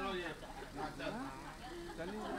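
Indistinct voices of several people talking at once, overlapping chatter with no clear words.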